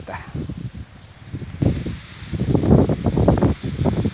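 Wind buffeting a phone's microphone, with rustling and handling crackle in irregular gusts. It is softer at first and grows louder about a second and a half in.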